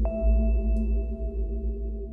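Ambient meditation music: a steady low drone with a singing bowl struck right at the start, its clear high tone ringing on and slowly fading.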